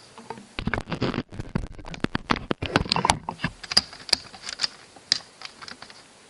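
Plastic clicks and rattles from the shell of a Nerf Alpha Trooper blaster being worked by hand to split its two halves apart. A dense flurry of clicks in the first half is followed by scattered single clicks.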